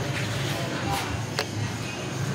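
Ambience of a large indoor exhibition hall: a steady low hum with indistinct distant voices, and two light clicks a little past a second in.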